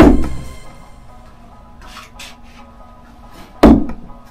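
Two thrown knives hitting a wooden end-grain target with loud thuds, one at the start and one about three and a half seconds later. Both throws over-rotated, so the knives struck with poor energy transfer into the target.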